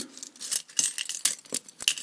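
Key being turned in a four-lever padlock to open and lock it, with a run of small metallic clicks and rattles as the key works and the keys on its ring jangle.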